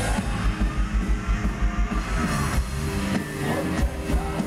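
Live rock band playing loud, with electric guitars, bass and drums; a fast run of even low drum beats drives the first half, and little or no singing is heard.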